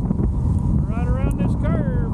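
Wind rumbling hard on a helmet-mounted camera's microphone while riding an e-bike along an open road. About halfway through, a short, high, wordless voice slides up and down for about a second.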